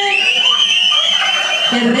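Men in an audience whistling loudly in answer to a call for a loud whistle: long, high whistles that overlap and waver in pitch, dying away about a second and a half in.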